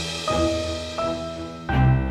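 Background music: slow held notes over a low bass, a new note starting roughly every three-quarters of a second, with a louder, deeper bass note coming in near the end.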